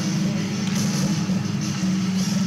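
Music playing over an ice rink's public-address system during a stoppage in play, over a steady low hum.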